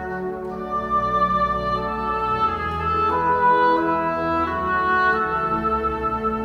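Instrumental introduction of a traditional Norwegian hymn arrangement: a slow woodwind melody over long sustained organ chords, without voice.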